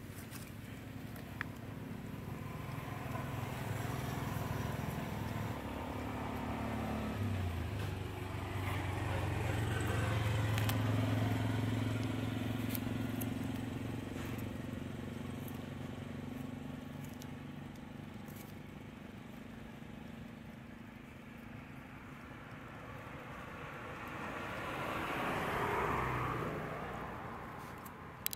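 Motor vehicles passing: a low engine hum swells to its loudest about eleven seconds in and fades, then another swells and fades near the end.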